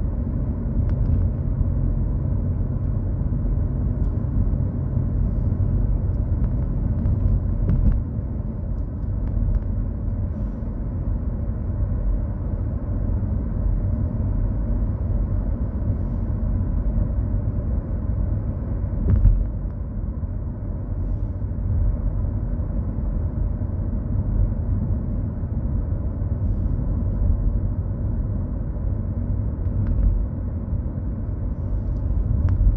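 Steady low rumble of road and tyre noise heard inside the cabin of a car driving at speed, with a brief thump about eight seconds in and a louder one about nineteen seconds in.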